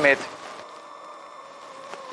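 Low, steady background noise with a faint constant hum, after the last word of a man's speech at the very start.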